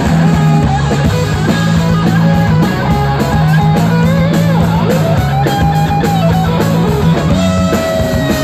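Loud live rock band playing with electric guitars, bass and drum kit, a lead line of bending notes riding over a sustained low note.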